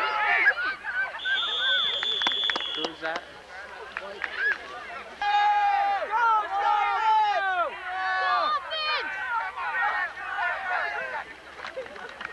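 A referee's whistle blown once, one steady shrill blast of about two seconds, ending the play, over people shouting. From about five seconds in, many spectators' voices yell and cheer at once.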